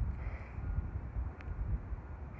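Wind rumbling on the microphone, with a faint tick partway through.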